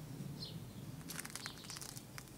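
Footsteps crunching on a gravel path, a quick run of crunches starting about a second in. A bird's brief chirp is heard about half a second in.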